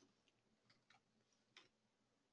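Near silence with a few faint, scattered clicks from computer use, typical of a mouse or keyboard being worked at a desk.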